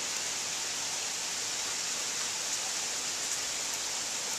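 Steady rain falling, an even hiss with no thunder or other sudden sounds.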